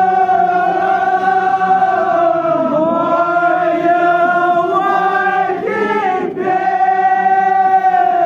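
Male voices chanting a Kashmiri marsiya, a Shia elegy, in long drawn-out notes, with a brief break about six seconds in.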